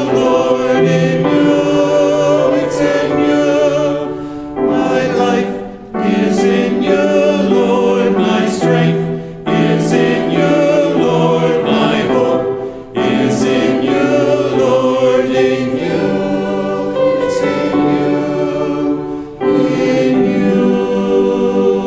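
Mixed choir of men's and women's voices singing in parts, in phrases with short breaks between them.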